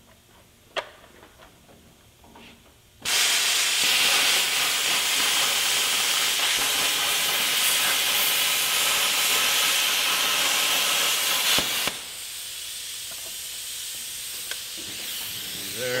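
Hypertherm Powermax45 XP plasma cutter drag-cutting quarter-inch plate along a straight edge. After about three seconds the arc starts with a loud, steady hiss that cuts off suddenly a few seconds before the end, leaving a quieter hiss until the end.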